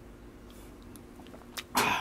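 A person tasting coffee from a cup: a small click, then a short loud breathy mouth sound near the end, over a faint steady hum.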